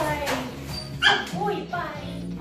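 German Shepherd giving a few short, high-pitched yelps while being petted, the loudest starting sharply about a second in, over background music.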